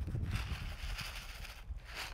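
Paper seed packet rustling as small clay-coated basil seeds are shaken out of it into an open hand, over a low steady rumble.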